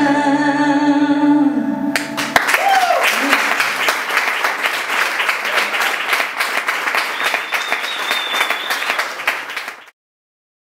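The song's last sung note, held over acoustic guitar, ends about two seconds in. Audience applause with a cheer follows, then fades away near the end.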